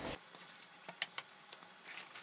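Faint stirring of crumbly flour toasting in butter in a stainless steel pot with a wooden spoon, with a few light clicks as the spoon knocks against the pot.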